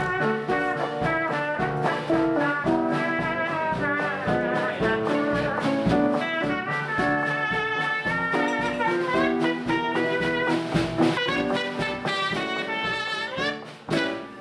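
Live jazz band playing an instrumental passage with a trumpet leading over other brass, piano and a drum kit keeping a steady swing beat. The phrase ends with a rising glide just before the music briefly drops away.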